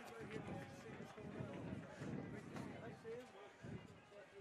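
Faint, scattered shouts and calls from players and spectators across a rugby pitch, over low crowd murmur.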